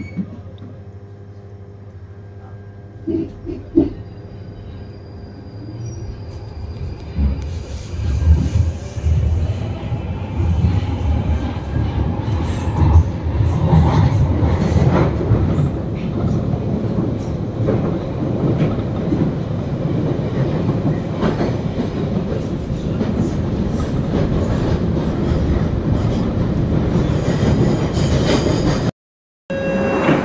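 London Underground Northern line train heard from inside the carriage as it pulls away. It is fairly quiet for the first few seconds, then from about seven seconds in the wheel-and-rail rumble of the train running through the tunnel grows loud and stays steady, with occasional rattles. The sound cuts out briefly near the end.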